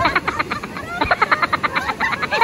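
Women laughing hard in fast, repeated high-pitched pulses: a short burst, a brief break, then a longer run starting about a second in.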